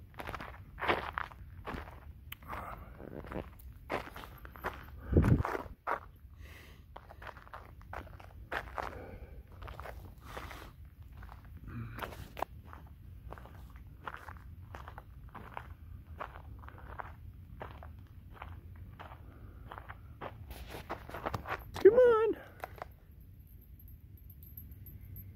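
Footsteps of a person walking on a packed dirt and gravel trail, about two steps a second, with a heavier thump about five seconds in. A short pitched vocal call comes near the end and is the loudest sound.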